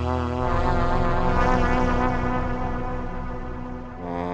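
FB-3200 software synthesizer, an emulation of the 1978 Korg PS-3200, playing a sustained pad chord on its 'Dreamscape' preset, with a slight wavering in pitch. The low notes change about half a second in, and the chord fades slowly near the end.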